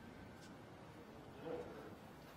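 Quiet room tone of an empty sports hall, with a brief faint sound about one and a half seconds in.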